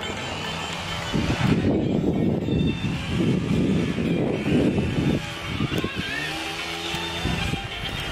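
Background music, with a rough rumble of wind on the microphone of a moving bicycle from about a second in until about five seconds in.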